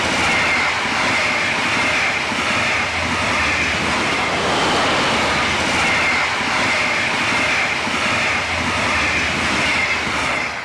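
Double-deck regional express train hauled by a class 146 electric locomotive, passing close at speed: a loud, steady rolling rumble and rattle of wheels on rail, with a sustained high ringing above it.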